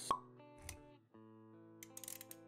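Intro sound effects over soft background music: a sharp pop right at the start and a short low thud just after, then held synth notes from about a second in, with a few light clicks near the end.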